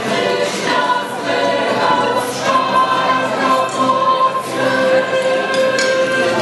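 Choral music: a choir singing a slow piece in long held notes.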